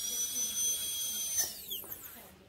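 High-speed dental handpiece (dental drill) running free: a high whine that has just spun up holds a steady pitch, then winds down with a falling pitch about a second and a half in.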